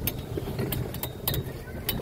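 Golf cart on the move: a steady low rumble with about five sharp clicks and rattles scattered through it.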